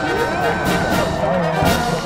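Orchestral music led by brass, with voices underneath.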